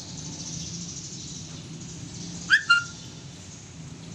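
A bird chirping twice in quick succession, two short rising chirps a little past the middle, the second ending in a brief held note, over a steady low background hum.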